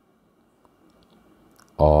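Faint, sparse ticks of a stylus tapping and writing on a tablet screen, then a man's voice starts speaking near the end.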